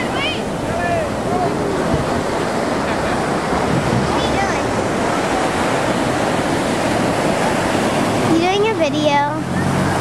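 Ocean surf breaking and washing up the sand, a steady rush. Voices call out faintly a few times, and a child's voice rises clearly near the end.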